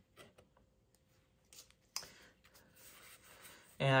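Faint handling of Pokémon trading cards: soft clicks and rubs as cards slide between the fingers, with one sharper click about halfway through.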